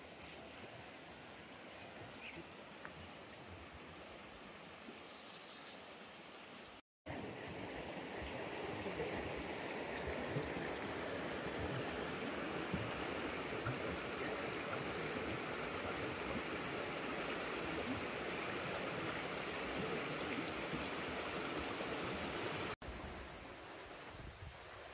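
A shallow mountain creek running fast over rocks, a steady rush of water. It is faint at first, then much louder and closer after a cut about seven seconds in.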